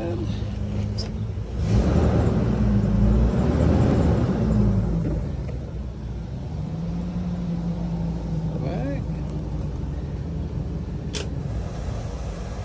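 Shuttle bus engine idling with a steady low hum. From about two to five seconds in, a louder stretch of handling and movement noise sits over it.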